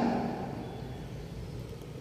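The last word's echo dies away in the room in the first half second, leaving a low, steady background rumble of room noise.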